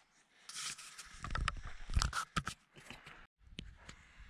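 Close handling noise: rustling, then a quick series of clicks, knocks and low thumps as the camera is set down and positioned on a workbench.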